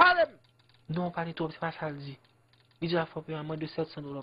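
Speech only: a man talking in short heated phrases, with a loud exclamation at the very start.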